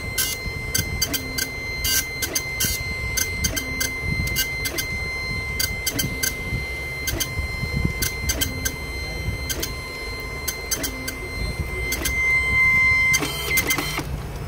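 Dot-matrix printer printing through gold foil for gold embossing, its print head running across line by line in a regular cycle about every second and a bit, with a steady high whine and a click at each line feed. It gets louder and noisier near the end.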